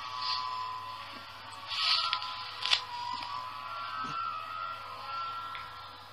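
Ice cream van chime playing a simple electronic melody, faint and slowly fading, over a steady hiss, with a sharp click a little under three seconds in.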